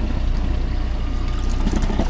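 A wire crab pot being hauled up over the side of a boat, water pouring and trickling off the trap as it comes out, over the steady low hum of the idling boat motor.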